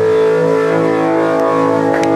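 A live rock band holding a sustained chord on electric guitar and bass, ringing steadily with no drum strikes, the held ending of the song.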